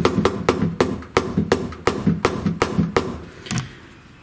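Hammer tapping a metal bar stock workpiece held in a milling-machine vise, a quick run of light, evenly spaced taps, about three a second, that stop about half a second before the end. The taps seat the bar down flat onto the Teflon strips used in place of parallels.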